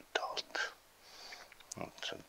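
A man's soft, breathy speech in Estonian, trailing into half-whispered sounds and a short pause with a faint hiss and a click, then his voice resuming near the end.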